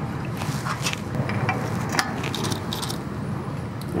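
Rubber hose being pushed and worked onto a catch can's fitting by hand: scattered clicks and scuffs over a steady low rumble.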